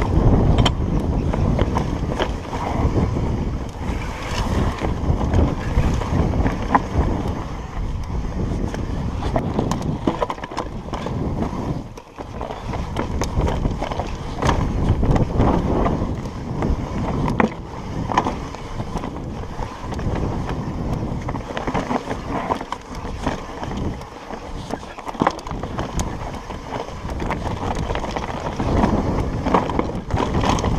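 Trek Slash 8 full-suspension mountain bike riding down a rocky trail: a steady rush of wind on the camera microphone over tyres rolling on loose stone, with frequent sharp knocks and rattles from the bike over the rocks.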